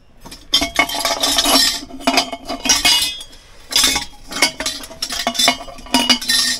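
Small metal tableware pieces clinking and clattering against each other and against a round metal pot as a hand rummages through them and lifts pieces out. The pot rings on after the knocks.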